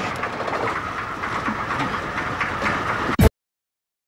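Car engine idling steadily. The sound ends in a sharp click and cuts off abruptly a little over three seconds in.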